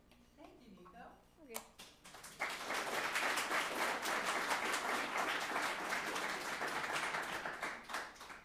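Audience applauding, starting about two and a half seconds in and dying away near the end, after a sharp click about one and a half seconds in.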